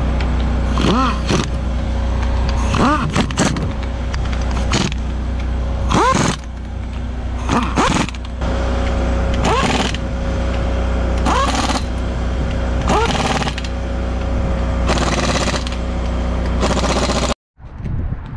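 Air impact wrench spinning up and hammering the planetary cover bolts tight on a Cat 740 rock truck's wheel end. It comes in about nine short bursts, each rising in pitch as it spins up, over a steady low hum.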